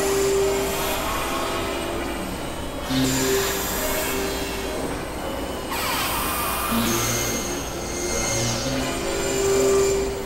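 Experimental electronic drone and noise music from synthesizers. Sustained tones shift every second or so over a hissing noise bed, with thin, high whistling tones above, and a falling sweep about six seconds in.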